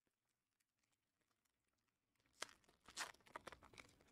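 Near silence, broken in the second half by a few faint, short clicks and rustles.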